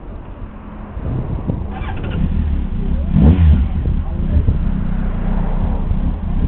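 A motorcycle engine running, growing louder about a second in, with a short blip of revs around three seconds in.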